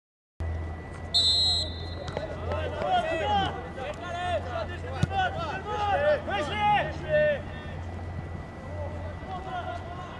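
Footballers shouting and calling to each other on the pitch, many short overlapping calls in the middle of the stretch, with a brief high whistle about a second in. A steady low hum runs underneath.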